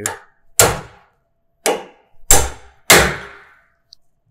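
A hammer striking a freshly hardened and tempered steel chisel that is driven into a piece of 1/8-inch mild steel held in a bench vise. There are four metallic blows in about two and a half seconds, each ringing briefly, the last two loudest.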